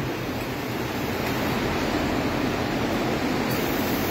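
Steady hissing noise of a working milking parlour, its milking machines running with the units attached to the cows.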